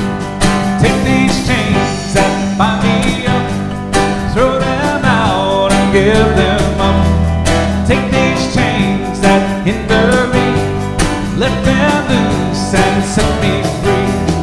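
Live country-folk band playing a song: strummed acoustic guitar, electric guitar and a steady bass under a gliding melody line, with a shaker keeping time.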